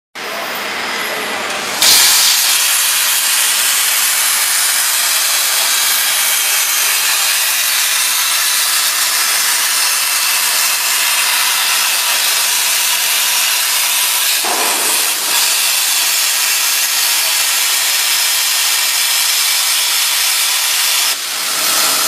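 CNC plasma cutter's torch arc hissing steadily as it cuts 15 mm steel plate. The hiss starts quieter and jumps louder about two seconds in, with a brief dip near the end.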